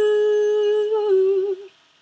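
A woman's voice holding one long sung note, unaccompanied, dipping slightly in pitch about a second in and ending just before the end.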